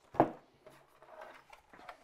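A short spoken word, then faint handling noise: small knocks, clicks and rustles as a digital postal scale with a mountaineering boot on it is picked up and moved.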